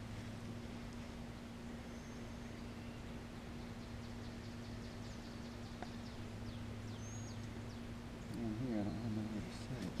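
Air compressor running with a steady low hum, with a few faint bird chirps over it.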